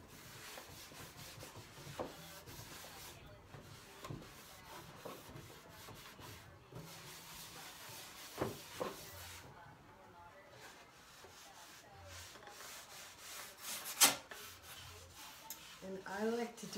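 A cloth rubbing back and forth over the bare wooden inside of a drawer, working in paste wax, a continuous scrubbing. Light wooden knocks come now and then, and a sharp knock about 14 seconds in is the loudest sound.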